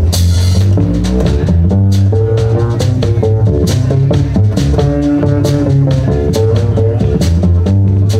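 Live blues trio playing an instrumental passage: acoustic guitar, upright double bass and drum kit, with a cymbal crash at the very start.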